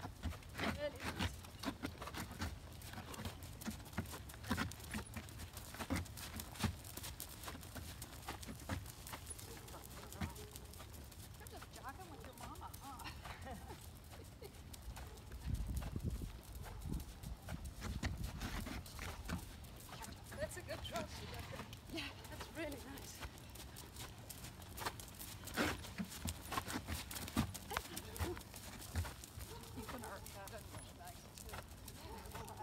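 A horse trotting on gravel arena footing, its hoofbeats coming as a steady run of short strikes.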